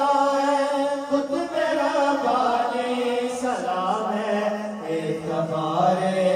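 Male naat reciters chanting a salam, with long held and gliding notes, sung into microphones without instruments.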